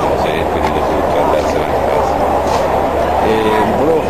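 A man talking close to the microphone, over steady low background noise.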